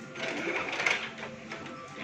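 An office printer running, a mechanical whirr that swells for about a second and then eases off.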